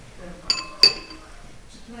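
A metal spoon clinks twice against a ceramic bowl, the second strike louder, each ringing briefly.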